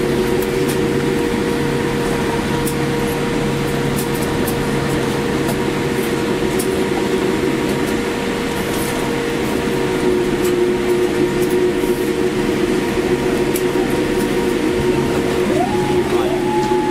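Cabin noise inside a Boeing 787 rolling out on the runway after landing: a loud, steady rush of engines and airflow with several steady humming tones. Near the end one tone rises sharply in pitch as the spoilers stow.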